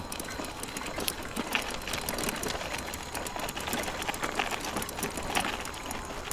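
Electric trike riding along a paved road: steady tyre and drivetrain noise with rapid, irregular rattling clicks and a faint, steady high whine.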